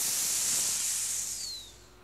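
Air hissing out of a punctured minibus tyre as it goes flat, a high hiss that fades away with a short falling whistle near the end.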